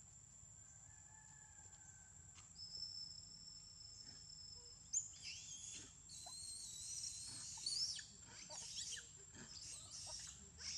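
A steady high-pitched insect drone, joined about halfway through by a series of loud, high, wavering squealing animal calls.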